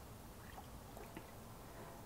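Faint pouring of thick liquid malt extract from a bucket into a stainless brew kettle of warm water, a paddle stirring in the pot, with a few soft ticks.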